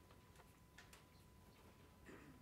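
Near silence, with a few faint ticks and light scratches of a marker pen writing on paper.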